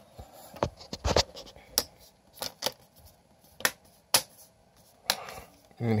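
Plastic display bezel of an MSI GL62 laptop being pressed into place by hand, its clips snapping into the lid with a series of sharp, irregularly spaced clicks.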